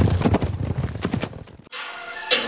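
Sound effect of many pounding hoofbeats over a low rumble, like a stampede, fading out about a second and a half in. Near the end it cuts abruptly to a brighter sound with steady tones.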